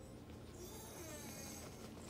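Faint breathing and snuffling of a small puppy nosing at a plush toy close to the microphone.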